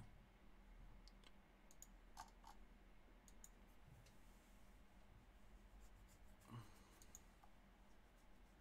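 Near silence with faint, scattered clicks from a computer mouse and keyboard in use, over a low steady room hum.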